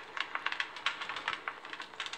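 Crackling wood-fire sound effect played from a smartphone app through the phone's speaker: many small irregular snaps and pops.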